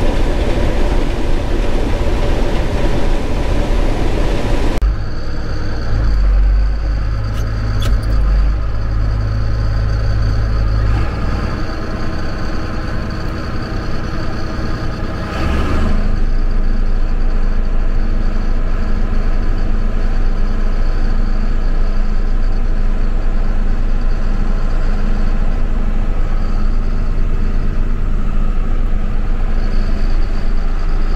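Farm machinery running, heard from inside the cab. At first a combine harvester is shelling corn, a steady noise spread across all pitches. After abrupt changes at about 5 and 16 seconds, a tractor engine runs on at a steady pitch.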